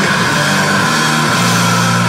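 Loud live rock band playing with electric guitars, moving to a held low chord a little past halfway through.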